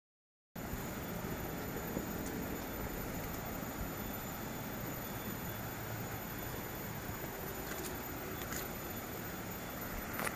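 Steady outdoor background noise with a low rumble and a faint steady high whine, starting after a moment of silence. A few faint footsteps on a dirt footpath come near the end.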